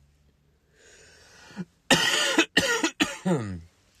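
A man coughing three times in quick succession, about two seconds in.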